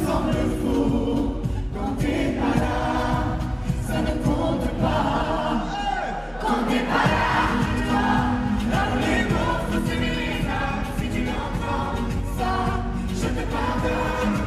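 A pop ballad performed live in concert: several voices sing over the band, with the crowd audible. The bass drops out briefly about six seconds in, then comes back.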